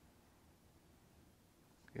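Near silence: room tone, with a man's voice starting right at the end.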